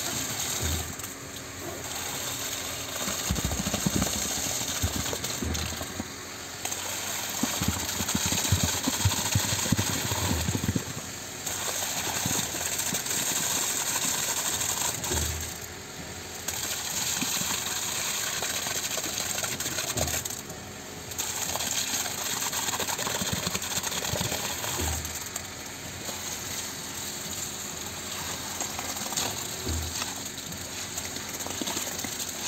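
Concrete pump running steadily while concrete is pushed through its delivery hose, with a low thump about every five seconds as each pumping stroke changes over.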